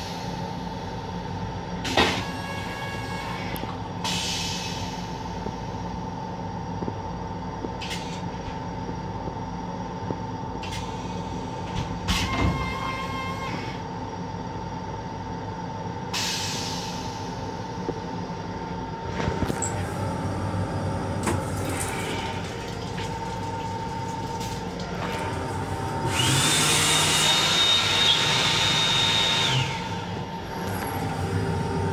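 LIRR M7 electric railcar heard from inside its restroom: a steady hum with a constant high whine, with occasional knocks, rattles and short hisses. For the last four seconds a louder hiss rises, carrying a thin high whine.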